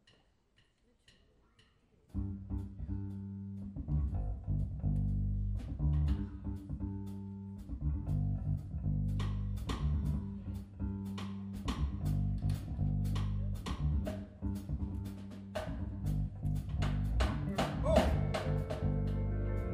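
Live band starting a song: after about two seconds of near quiet with a few soft clicks, electric bass and keyboard come in together with a repeating low groove, and from about nine seconds drums join with steady, regular cymbal strokes.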